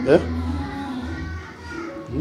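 A man's short rising questioning 'eh?', then indistinct background voices, children's among them, over a steady low hum.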